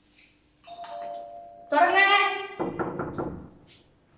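Electronic doorbell chime playing a two-note ding-dong as its wall push-button is pressed: a softer first note a little under a second in, then a louder, fuller second note that rings for about a second.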